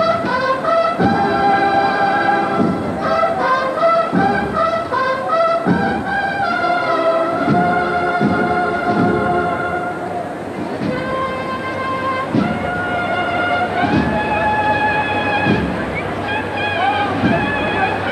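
A brass band playing a Holy Week processional march: a held, stepping brass melody over regular drum beats.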